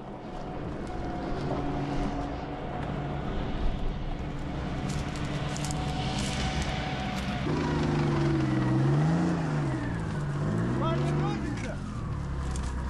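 A vehicle engine running steadily, then revving up and down several times for a few seconds from about halfway through; a man shouts near the end.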